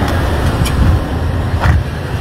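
Loud, steady low rumble with a hiss over it.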